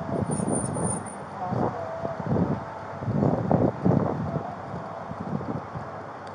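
Outdoor street noise on a body-worn camera microphone: irregular rustling and wind buffeting over distant traffic.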